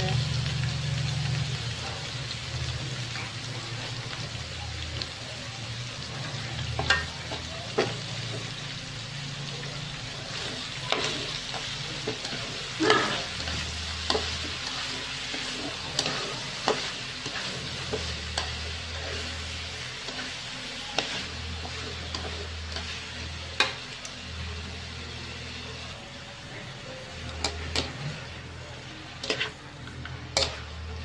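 Shredded kohlrabi and pork sizzling steadily as they are stir-fried in a nonstick wok. Wooden chopsticks toss the strips, with occasional sharp clicks against the pan.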